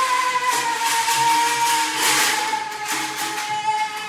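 A single high note held for about four seconds, sinking slightly in pitch, with a rough hiss over it.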